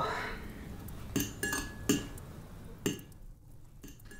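A few light clinks of cutlery against a plate, each short with a brief ring.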